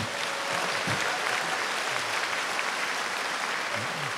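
A large audience applauding steadily, a dense even clatter of many hands clapping.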